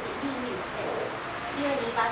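A woman's voice speaking in a small room.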